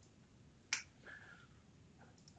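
A single short, sharp computer mouse click, a little under a second in, against faint room tone.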